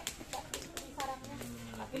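Young children's voices in the background with several light clicks and taps of small objects being handled on a floor mat.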